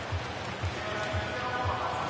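Stadium crowd murmur under public-address music with a low, steady beat about twice a second and a faint held tone.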